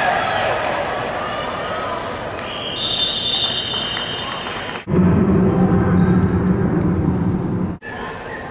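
Spectators chattering in a large indoor stadium, with a referee's whistle blown about three seconds in as the tackle ends the play. About five seconds in the sound cuts abruptly to a louder, duller stretch dominated by a low hum and rumble, which stops suddenly near the end.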